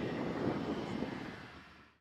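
Jet engine noise from a B-1B Lancer's four turbofan engines during a slow pass with wings fully forward, a steady rumble that fades away over the last second.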